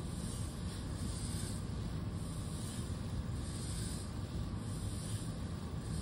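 Leg servo motors of a small 3D-printed quadruped robot driving its legs through a walking gait: a steady low hum with short, higher-pitched whirs roughly once a second as the legs swing.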